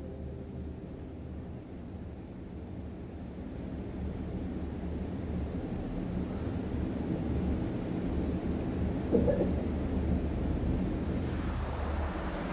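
Low, steady background rumble with no recitation, growing a little louder through the pause, with one brief faint sound about nine seconds in.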